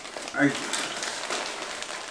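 Clear plastic bag of dry hay crinkling and rustling as it is handled and the hay inside is sifted by hand, a dense run of fine crackles.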